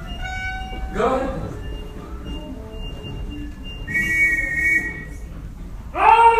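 Quiet orchestral underscore from a live stage musical: sparse, held, high whistle-like notes, with a brighter pair of high notes held for about a second near four seconds in.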